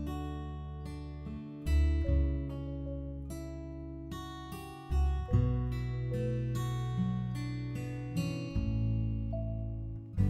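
Background music: an acoustic guitar playing plucked notes and strummed chords that ring out and fade, with a new chord every second or so.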